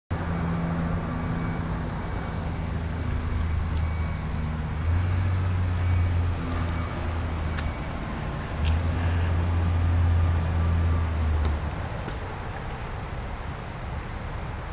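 A vehicle-type engine running with a low, steady hum that swells louder twice, with a few faint clicks.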